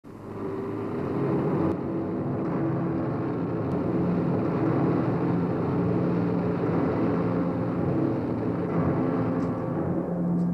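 Car engine running steadily with a low, even hum.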